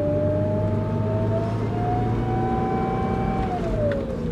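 1988 Porsche 944 Turbo's turbocharger howling under acceleration over the engine's running, a single tone rising slowly in pitch, then falling away near the end. The sound is the sign of a turbo making no boost because the fins of its compressor wheel are broken off, leaving the wheel spinning wildly and doing no work.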